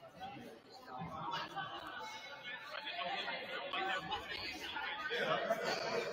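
Indistinct chatter of several people talking in a large gymnasium, growing louder near the end.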